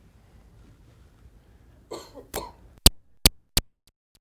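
Quiet room tone, then a short cough about two seconds in, followed by three sharp clicks less than half a second apart, the loudest sounds here.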